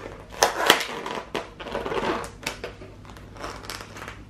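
Thin plastic takeaway containers crackling and clicking as they are handled, with irregular sharp snaps from the plastic lid, most of them in the first half.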